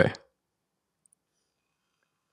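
A man's voice finishing a spoken word, then dead silence for the rest of the time.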